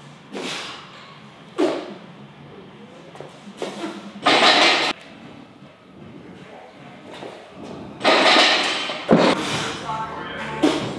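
A lifter doing heavy barbell push presses at 150 kg, letting out two loud, sharp breaths with the effort, about four and eight seconds in. A thud follows just after the second breath.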